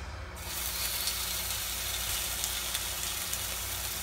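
Chicken thigh pieces sizzling skin-side down in a hot frying pan, a steady hiss that starts about half a second in. The skin is being seared first to render out the chicken fat.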